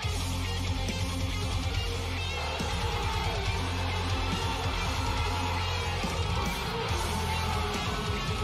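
Background music with guitar over a steady low bass.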